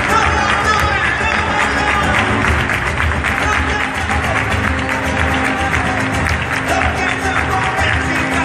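Live flamenco bulerías: many people clapping palmas in a fast rhythm over guitar, with voices mixed in.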